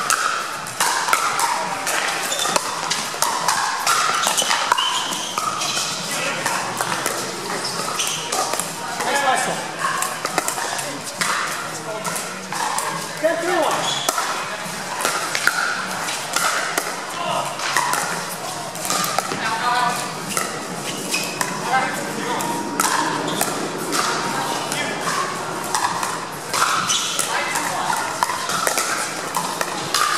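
Pickleball paddles striking the hard plastic ball, sharp pocks repeated again and again through rallies, over a steady chatter of voices in a large indoor hall.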